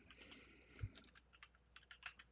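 Faint computer keyboard typing: a quick run of keystrokes, with one duller thump a little under a second in.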